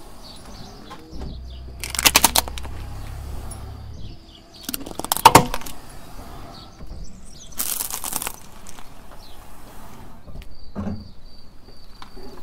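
Car tyre rolling over and crushing plastic toys on gravelly asphalt: several separate bursts of cracking and crunching, the loudest about five seconds in, with a low engine rumble under the first of them.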